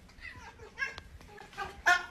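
A cat making a run of about four short, pitched calls, the last one loudest near the end.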